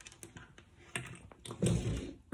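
Handling noise on a handheld phone's microphone: a string of light clicks and taps, then a louder rubbing bump near the end.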